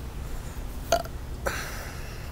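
A sharp click about a second in, then a brief rasping vocal noise from a man near the end, over a steady low rumble.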